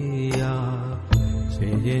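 Bengali devotional song: a held melodic line with instrumental accompaniment and a sharp drum stroke about a second in, and the singer's voice coming in on the next line near the end.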